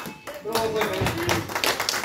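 Several voices talking and calling out in a hall, joined about half a second in, with scattered short sharp taps.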